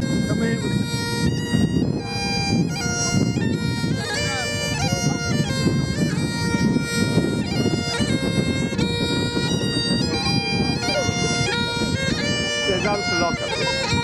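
Great Highland bagpipes playing a tune, with the chanter's melody stepping over the steady drones. The pipes strike up right at the start.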